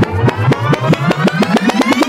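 Cartoon sound effect: a rapid train of buzzing pulses that speeds up as its pitch rises, like something winding up.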